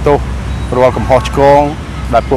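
A man talking in Khmer, drawing out one syllable a little past the middle, over a steady low rumble of road traffic.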